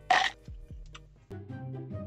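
A brief, sharp mouth noise as a spoonful of icy gelato is taken in, the loudest sound here. About a second later soft background music with sustained chords comes in.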